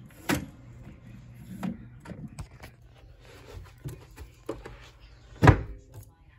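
Clicks and knocks of a BSR console record changer's arm and mechanism being handled, over a low steady hum, with a sharp knock just after the start and a heavy thump about five and a half seconds in, the loudest sound.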